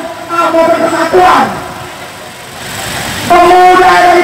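An amplified voice singing long, held notes through a public-address loudspeaker. It is loud in the first second or so, drops away in the middle and comes back strongly a little over three seconds in.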